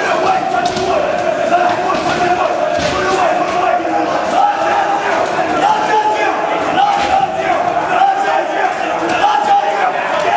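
Several voices shouting over one another without pause, the drill instructors yelling at recruits, with a few sharp bangs about three and seven seconds in.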